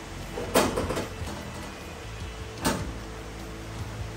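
Two knocks of a loose sheet-steel rear body panel being shifted against the car's body shell, one about half a second in and another near three seconds.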